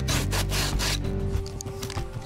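Sandpaper rubbed quickly back and forth by hand along the edge of a thin wooden board, about four to five rasping strokes a second, stopping about a second in.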